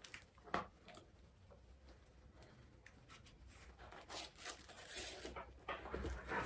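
Quiet paper handling: a couple of soft clicks about half a second in, then brief rustling of book pages in the last two seconds as pages are turned.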